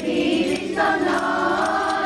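Children's choir singing Greek Christmas carols (kalanta), holding long notes, with a new note starting about a second in and triangles tinkling along.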